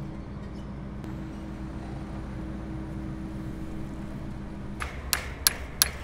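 A low steady hum, then near the end a quick series of sharp metallic clinks as pliers work the retaining pin on a steel crane-jib connecting axle.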